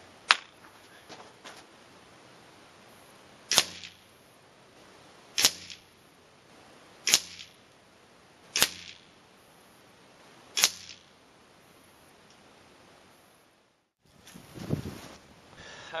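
Benjamin Marauder .25-calibre pre-charged pneumatic air rifle firing a group of pellets, heard from beside the target at 50 yards: a string of sharp cracks, about one and a half to two seconds apart, each a shot and pellet strike. Near the end, after a cut, a low rustle of wind on the microphone.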